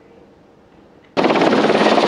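A near-silent pause, then about a second in the rotor and engine noise of a military helicopter coming in to land cuts in abruptly and loud, a rapid chop over a steady rush.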